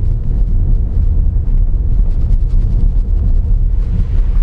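Steady low rumble of engine and road noise heard inside a small Honda car's cabin as it drives along.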